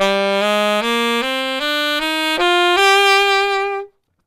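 Saxophone playing an eight-note scale rising one octave, E to E through C major, starting on its third degree (E Phrygian), in even quarter notes. The last note is held longer with vibrato.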